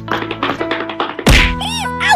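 A loud cartoon thud sound effect about a second in, followed by a short warbling, springy tone, over steady background music.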